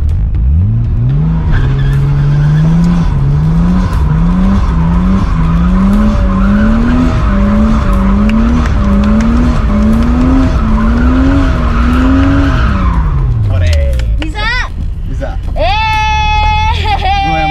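Nissan Cefiro drift car spinning donuts, heard from inside the cabin: the engine revs up hard and its pitch climbs in a rising surge about once a second, over steady tyre squeal. Near the end the revs fall back to idle and the squeal stops.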